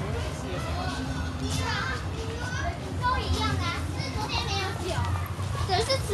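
Crowd with children's voices chattering and calling out over one another, with high-pitched calls around the middle, over a steady low hum.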